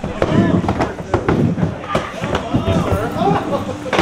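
Several people talking and laughing over one another, with a few sharp clacks of a skateboard striking a wooden ramp, the loudest about two seconds in.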